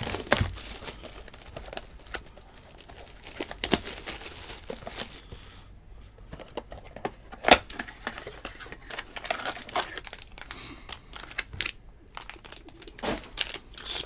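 Plastic shrink wrap crinkling and tearing as a sealed trading-card box is unwrapped, then the cardboard box opened and a foil card pack handled. Irregular crackles throughout, with one sharp snap about halfway.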